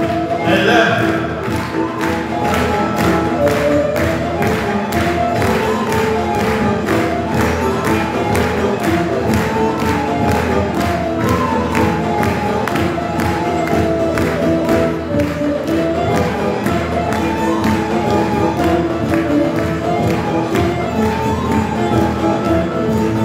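Live Turkish folk music (türkü) from an ensemble of bağlamas and other folk strings, with a steady percussion beat under the melody.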